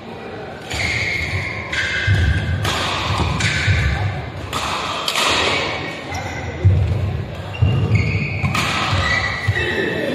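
Badminton doubles rally: rackets striking the shuttlecock in quick sharp hits, with shoes squeaking and feet thudding on the court mat, echoing in a large hall.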